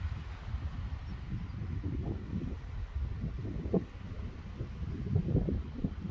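Wind buffeting the microphone outdoors: an uneven low rumble that swells and falls in gusts.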